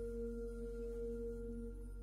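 Soft background music: a low held tone, two steady pitches sounding together, slowly fading.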